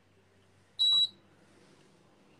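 A single short electronic beep, one steady high tone about a quarter second long, about a second in.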